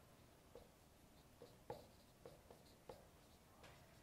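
Dry-erase marker writing on a whiteboard: about six faint, short taps and squeaks at irregular moments as letters are written, the strongest a little under two seconds in.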